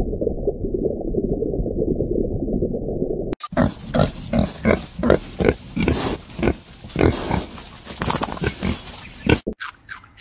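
Piglets grunting in a string of short grunts, about two a second. They start after a dull, muffled rumbling noise that ends abruptly about a third of the way in.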